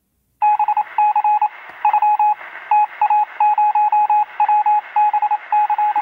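A single steady beep tone keyed on and off in short and long pulses, like Morse code, over a narrow, radio-like hiss. It starts about half a second in.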